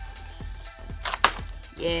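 Paper backing being peeled off a sheet of self-adhesive vinyl, with a few sharp crackles about a second in from the static as the sheet comes free.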